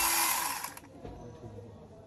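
Electric chainsaw running with its chain spinning, a steady high whine, then released: the motor cuts out and winds down about half a second in, leaving only faint handling knocks.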